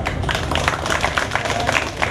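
A small group of people applauding: many quick, uneven hand claps.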